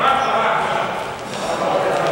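Indistinct voices of players calling out in a reverberant gym, with a basketball being dribbled on the court floor.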